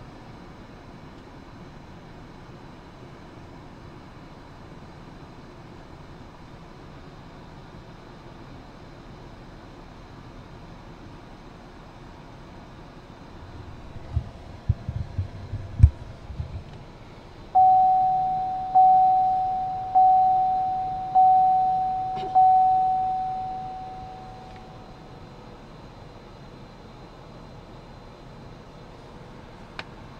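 A GMC's interior warning chime dinging five times at a little over one a second, each ding fading away, after a few handling knocks.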